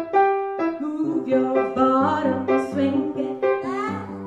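A grand piano and a woman's singing voice: a few separate piano notes at first, then her voice comes in over piano chords about a second in.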